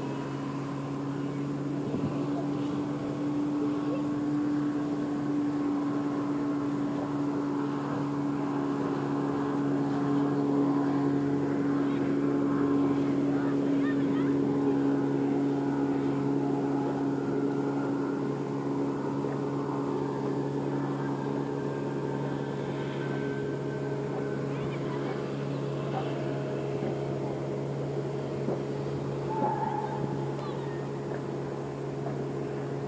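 Engine of a passing riverboat, a steady low drone that grows louder toward the middle and then slowly fades.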